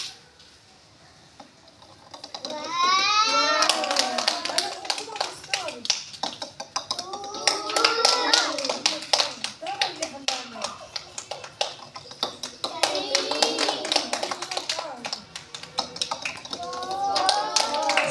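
Children's voices calling out excitedly, with scattered hand claps, after a quiet first two seconds.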